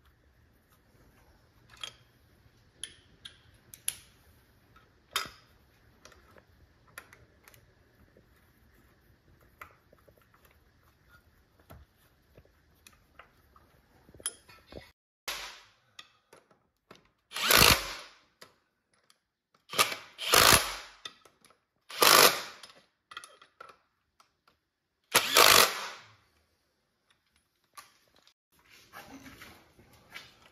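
A cordless impact wrench runs in five short bursts through the second half, driving in the new clutch's pressure-plate bolts on the flywheel. Before that there are only light clicks and taps of hand tools on the bolts.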